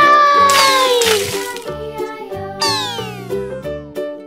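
Upbeat children's background music with cartoon sound effects: a falling, voice-like glide over a splashy burst at the start, then a quick run of descending whistle-like sweeps about three seconds in.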